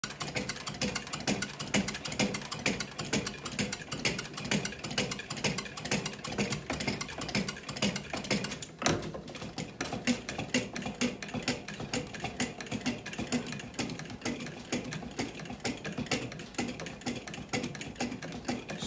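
Bench-top bat rolling machine working a composite baseball bat between its rollers by hand, giving fast, dense clicking throughout with a brief lull a little before halfway. This is the rolling stage of breaking in the composite barrel.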